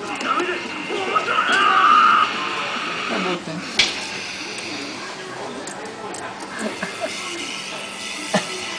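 Background voices and electronic arcade-machine music. There is a loud, high-pitched sound about a second and a half in, and a single sharp click a little before the middle.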